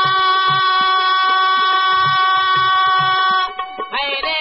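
Harmonium holding one long, steady reed note over hand-drum strokes, in a folk song's instrumental break; the note stops about three-quarters of the way through.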